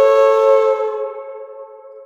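Low whistle holding one long note over a sustained keyboard chord, both fading away toward the end.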